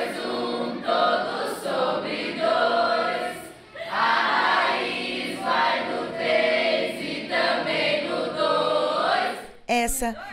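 A class of teenage students singing together a song made to help memorise math formulas. The song comes in short phrases with held notes and brief breaks between them.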